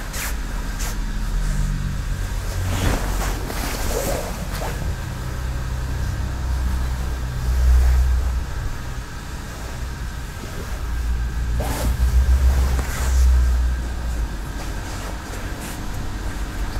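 Soft rustling and sliding of feet on tatami mats and of kimono and hakama fabric, in two spells a few seconds in and again about twelve seconds in, over a steady low rumble.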